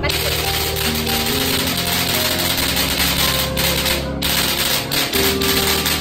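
Background music with a loud, rapid clatter of clicks laid over it, starting abruptly and breaking off briefly about four seconds in: an edited-in suspense sound effect.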